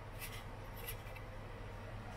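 A few faint, brief scrapes as fingers press pastry lattice strips down onto a foil pie tin, over a steady low hum.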